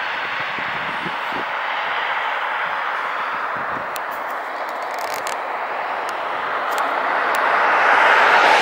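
Steady road noise from passing traffic, a hiss of tyres on asphalt that swells louder near the end.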